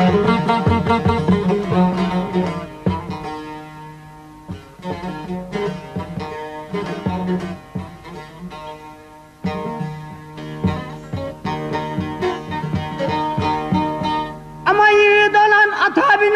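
Bağlama (long-necked Turkish saz) playing an instrumental folk passage of quick plucked notes over a ringing drone. A singing voice comes in loudly near the end.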